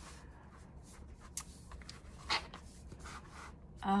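Hands rubbing and brushing over the paper pages of a spiral-bound sticker book, with a soft rustle and a few brief scuffs.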